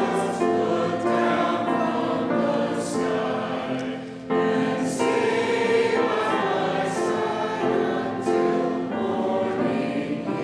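Church choir of men and women singing sustained notes, with a brief break for breath about four seconds in before the voices come back in together.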